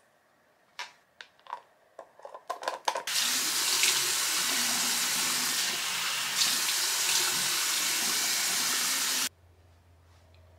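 A few small clicks and taps, then a bathroom sink tap running steadily as a face is rinsed under it; the water is shut off abruptly about a second before the end.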